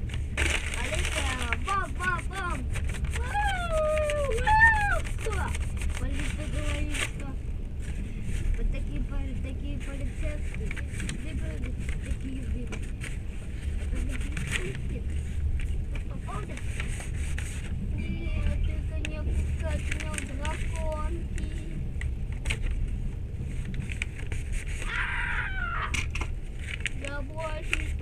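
Passenger train running, heard inside the carriage: a steady low rumble with a quick run of clicks in the first several seconds and scattered clicks after. Indistinct voices come and go over it.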